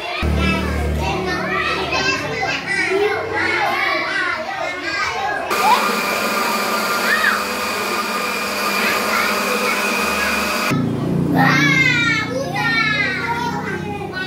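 An electric countertop blender runs steadily for about five seconds, blending watermelon chunks with water into juice, starting suddenly and cutting off abruptly. Children's chatter comes before and after it.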